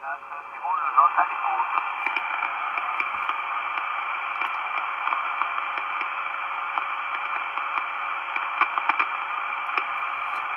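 Marko CB-747 CB radio receiving on the 11-metre band: steady static hiss from its speaker, squeezed into a narrow radio-audio range. Faint, garbled voice fragments and whistles come through the noise about a second in.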